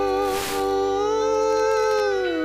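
Music from a pirate FM station on 87.9 MHz, received through a software-defined radio: one long held note with a slight waver that bends down near the end.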